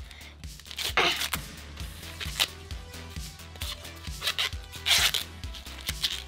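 Green corn husks being ripped and peeled off ears of fresh corn by hand: a run of short tearing and rustling sounds, the loudest about a second in, near two and a half seconds, and about five seconds in. Background music plays underneath.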